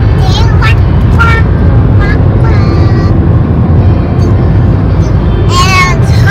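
Road and engine noise inside a moving car's cabin at highway speed: a loud, steady low rumble.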